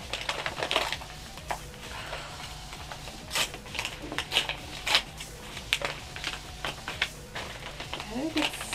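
Envelope being handled and pulled open by hand: irregular paper crinkling and rustling with sharp crackles, loudest a little after three seconds and again near five seconds in.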